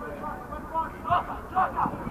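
Shouts from players and onlookers carrying across an outdoor football pitch: a few short calls about a second in, over open-air background noise.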